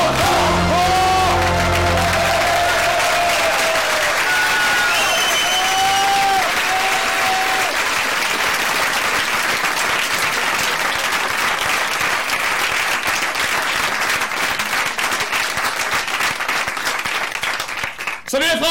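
Live audience applause as a song ends: the last sung and played notes fade out within the first few seconds while the clapping carries on, growing slightly more ragged toward the end.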